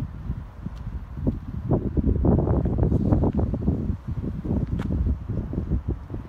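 Wind buffeting the phone's microphone: an uneven low rumble that swells in gusts, loudest in the middle.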